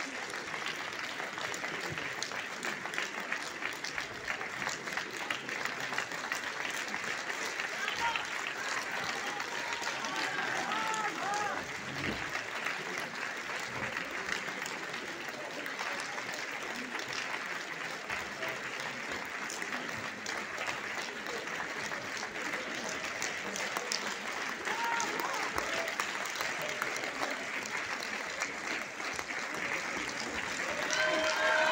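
Theatre audience applauding steadily, the dense clapping of a full house.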